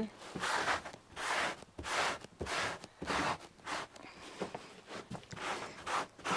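A hand-held saddle-pad hair-removal brush pressed hard and scraped across a quilted saddle pad in repeated short strokes, a little more than one a second, dragging horse hair out of the fabric.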